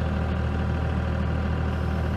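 Generator set engine running steadily at about 1,580 rpm, a constant low hum. The generator is producing normal output, showing the newly fitted rotating diode bridge rectifier is working.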